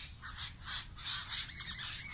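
Birds calling in the background: a scatter of short, high chirps and squawks, with a couple of clearer calls about one and a half seconds in.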